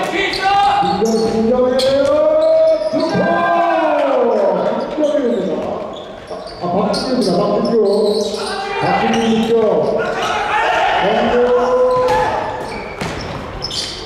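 A basketball bouncing on a hardwood gym floor during play, heard as scattered sharp knocks, under raised voices of players calling out to each other, all echoing in a large hall.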